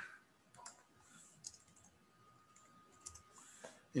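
Faint, scattered clicks of a computer keyboard and mouse, a few keystrokes spread over the seconds.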